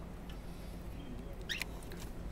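A green-cheeked conure eating busily, its beak making small clicks and crunches at the food and cage wire, with one sharper, louder click about one and a half seconds in.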